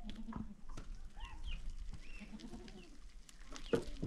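A goat bleating twice: a short call at the start and a longer, wavering one a little past halfway. Scattered sharp clicks sound around the calls.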